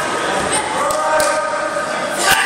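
Raised voices of spectators and coaches calling out across a school gym, with several sharp knocks in the first part.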